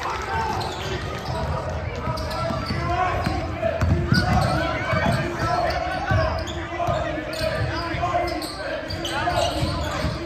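A basketball being dribbled on a hardwood gym floor, a few dull thuds of the bounces most noticeable around the middle, in the echo of a large gym, under the background chatter of voices.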